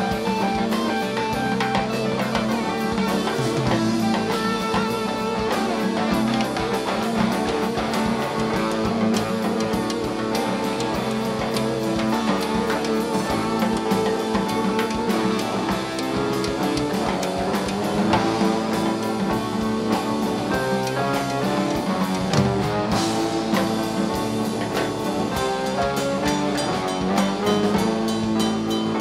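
Live rock band playing an instrumental passage without vocals: electric guitar lines over drum kit, bass and keyboards, at a steady loud level.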